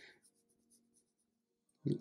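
Felt-tip pen stroking across paper, a short scratchy rub that stops just after the start. Then quiet until a voice comes in near the end.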